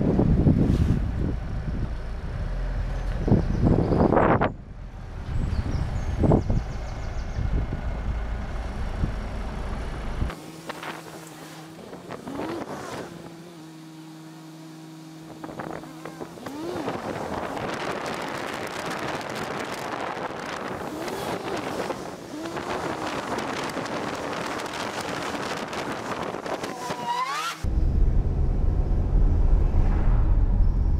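A car driving with wind buffeting a camera mounted on its roof, along with road and traffic noise. The sound changes abruptly about ten seconds in, turning quieter with a steady low hum, and the heavy rumble comes back near the end.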